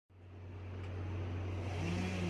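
A steady low engine rumble with a faint hiss, fading in over the first second.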